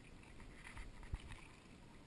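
Faint sloshing and splashing of water in a metal washtub as a wet black Labrador is scrubbed by hand, with one soft thump a little over a second in.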